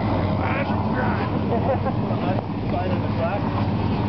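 Ice-racing cars' engines running steadily as a low hum, with people talking in the background.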